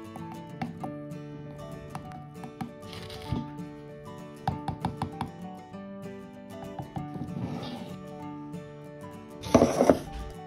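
Background music with held notes, joined by a brief loud rushing noise near the end.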